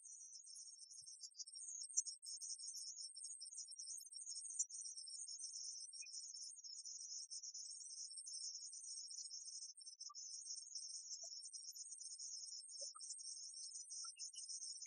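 Faint, high-pitched chirping hiss with no music or voices.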